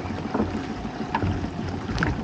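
Heavy rain falling on the sea around a small open boat: a steady hiss, with a low steady hum underneath and a couple of short taps.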